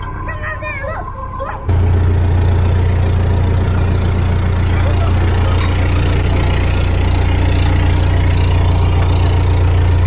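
Narrowboat diesel engine ticking over, a loud, steady low hum, coming in abruptly about two seconds in. Before it there are a couple of seconds of high, warbling squeaks.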